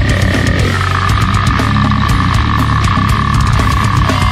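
Slamming brutal death metal: heavily distorted down-tuned guitars and pounding drums, with a held high tone over the top that drops in pitch just under a second in.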